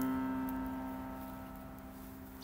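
A piano chord from the background music, struck just before, rings on and fades away steadily.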